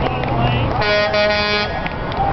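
A vehicle horn sounds once for about a second, near the middle, over the steady noise of highway traffic.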